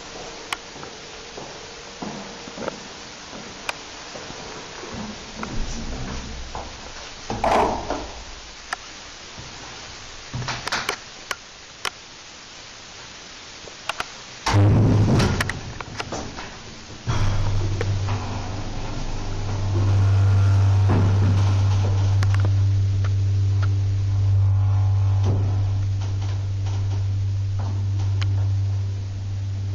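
Old DEVE lift with no inner doors: scattered clicks and knocks, a loud clatter about halfway through, then a steady deep electric hum from the lift's drive that starts a little after halfway and keeps going.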